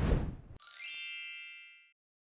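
Video transition sound effects: a brief noisy whoosh, then about half a second in a single bright chime or ding that rings and fades away over about a second and a half.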